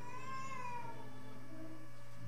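A short meow-like cry that rises and then falls in pitch, lasting under a second near the start. Underneath it, instrumental music plays with held, steady notes.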